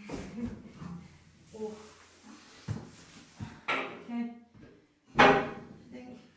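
Heavy clawfoot bathtub being pivoted by hand on a wooden floor: a low knock partway through and a sharp, loud thump near the end. Short mumbled words and effort noises from the people lifting it come in between.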